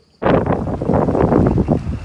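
Wind buffeting the microphone, a loud rough rumble that starts suddenly about a quarter second in and eases off near the end.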